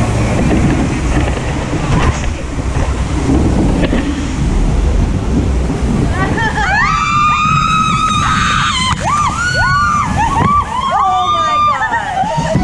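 Log flume boat running through its water channel, with water rushing and wind on the microphone. From about six seconds in, several riders scream in long, held high cries as the log goes down the drop.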